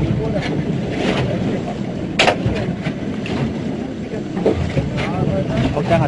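Submarine volcanic eruption heard from a boat: a continuous low rumble broken by sharp explosive cracks, the strongest about two seconds in.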